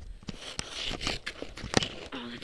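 Rustling and scraping on snow with a string of sharp clicks, the loudest near the end, as skis and gear shift about while the skier stands.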